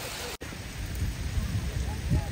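Heavy rain pouring onto a lake surface, a steady hiss. A brief break in the sound comes just under half a second in, and low rumbling builds from about a second in.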